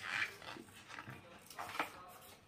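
Pages of a paperback picture book being handled and turned: a soft paper rustle at the start and a few light paper clicks near the end.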